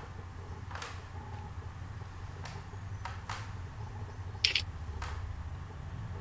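Open-microphone background on a video call: a steady low hum with a few faint scattered clicks, and one short, sharp high burst about four and a half seconds in.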